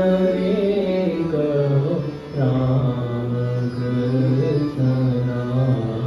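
A devotional bhajan sung by men's voices over the held notes of a harmonium, with a brief break between sung phrases about two seconds in.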